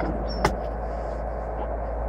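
Carburetted car engine idling steadily with the choke pulled, heard from inside the cabin, with one sharp click about half a second in. It is running on poor 80-octane petrol, which the owner blames for stumbling revs and knocking valves.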